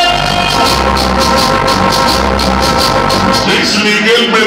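Loud cumbia dance music played by a DJ through a sound system, with high percussion marking a steady beat about four times a second over a pulsing bass line.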